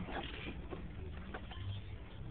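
Quiet room noise with a steady low hum and a few faint, soft clicks; no keyboard notes are played.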